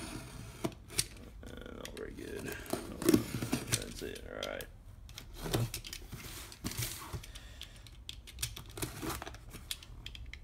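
Snap-off utility knife cutting through packing tape on a cardboard box, with irregular scraping strokes and the box being handled and turned. The loudest stroke comes about three seconds in.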